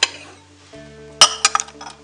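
White ceramic bowls clinking against each other as one is taken from a stack on a cupboard shelf: a quick run of sharp clinks just over a second in, the first the loudest.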